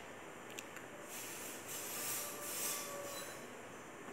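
Faint steady hiss of room noise, swelling slightly in the middle, with a small click about half a second in.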